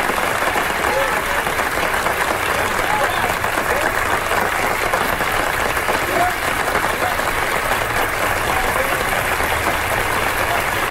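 An audience applauding steadily for the whole time, with a few voices calling out over the clapping.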